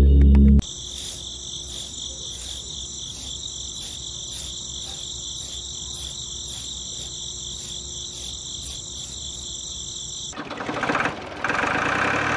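Crickets chirping steadily, about three pulses a second, after a brief end of loud music at the start. Near the end a louder buzzing motor noise cuts in.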